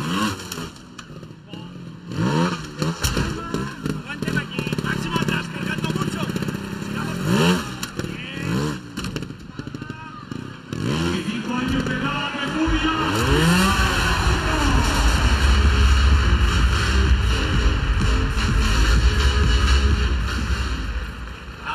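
A trials motorcycle's engine is blipped in short, sharp revs, each rising and falling in pitch, about half a dozen times as the bike hops and climbs obstacles. From about twelve seconds in, a large indoor crowd cheers and applauds loudly and steadily.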